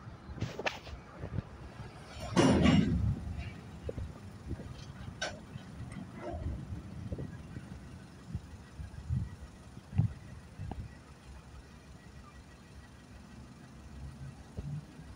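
Freight train gondola cars rolling slowly past on the rails: a low, steady rumble with scattered knocks from the wheels and couplers, the sharpest about ten seconds in. A louder rushing burst comes about two seconds in.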